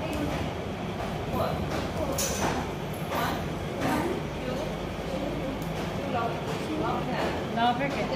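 Indistinct voices of several people talking, with scattered thuds of bare feet stepping and stamping on a hard floor.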